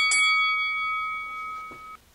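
Bell-like chime, struck the last of three quick times just at the start, then ringing and slowly fading before it cuts off abruptly at the end.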